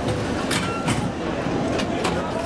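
Break Dance fairground ride running, heard from on board: a steady mechanical rumble with a few sharp clacks.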